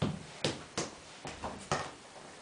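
A baby playing with a small plastic ball on a tile floor: about five sharp taps and knocks, irregularly spaced over two seconds.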